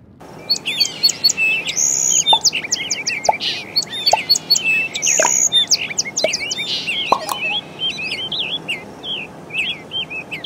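Songbirds singing: a busy run of quick chirps and whistles, with several birds calling over each other.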